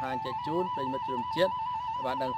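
A man talking over background music that holds a steady high note.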